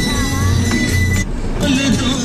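A song playing on the car radio inside the cabin, over a steady low engine and road rumble. The music briefly breaks off about one and a half seconds in.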